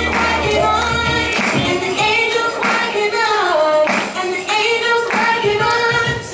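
Young female voices singing a song together over an instrumental accompaniment with a steady beat and bass line.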